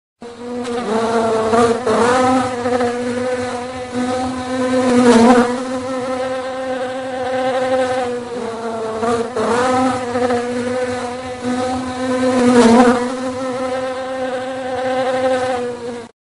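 Buzzing of a flying insect as a sound effect: one steady pitched drone that swells briefly in pitch and loudness four times, then cuts off suddenly.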